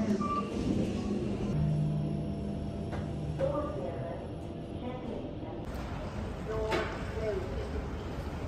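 Indistinct voices over background hubbub, with a low steady hum for a couple of seconds in the middle.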